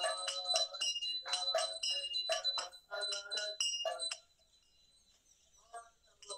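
Devotional kirtan singing with bright metallic strikes of hand cymbals or a bell keeping time over a held ringing tone. It breaks off about four seconds in, leaving a short near-silent pause.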